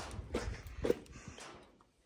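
Handling noise: a few light knocks and clicks, dying away to near silence near the end.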